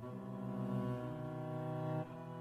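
Solo cello bowing low, sustained notes, with the pitch changing about a second in and again at the end.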